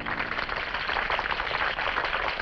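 A group of people clapping and applauding, many hands at once, as the last guitar chord of a rockabilly song dies away.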